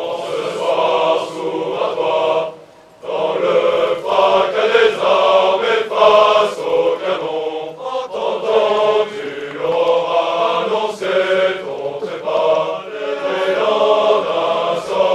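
A large formation of officer cadets singing their military promotion song together as a massed choir. The singing breaks off briefly about two and a half seconds in, then resumes.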